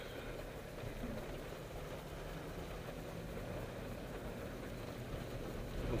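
A car running, heard from inside its cabin while driving in the rain: a steady low engine hum under an even hiss from the wet road and rain.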